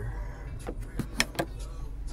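A car idling, heard from inside the cabin, with a steady low rumble and about four sharp clicks and knocks about a second in.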